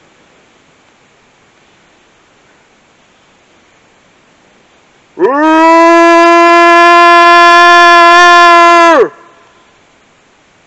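A single loud, horn-like call held at one steady pitch for nearly four seconds, starting about five seconds in and cutting off sharply. It is a call made to draw out whatever animal is in the woods.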